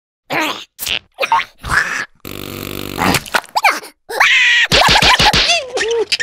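Wordless cartoon character vocalising: short grunts and mutters, a raspy buzzing sound about two seconds in, then a longer run of grumbling with a pitch that slides up and down.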